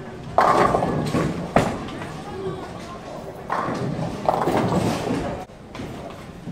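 People talking in a busy bowling alley, with a sharp knock about a second and a half in.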